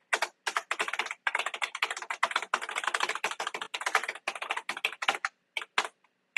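Fast typing on a computer keyboard: a dense run of rapid keystrokes, with a short pause about five and a half seconds in before a few more keys.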